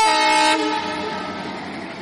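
Train horn sounding one short blast of about half a second, then a fading rumble from the passing train.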